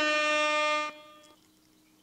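A toddler's voice holding one steady high note, which stops abruptly about a second in and gives way to silence.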